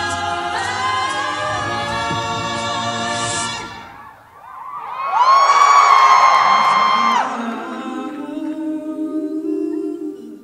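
A cappella group singing a held chord that dies away about four seconds in. A single voice then holds one long high note, the loudest part, and softer, lower singing follows.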